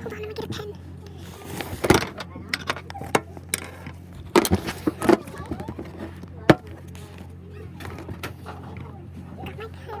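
Handling noise from a phone microphone held against clothing: fabric rubbing and a string of sharp knocks and bumps as the phone is moved about, over a steady low hum and faint background voices.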